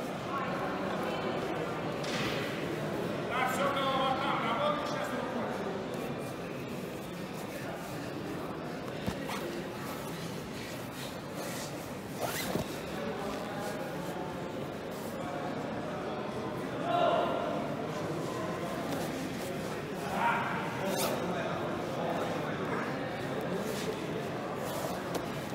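Indistinct voices calling out now and then over the steady background noise of a large hall, with a few brief knocks.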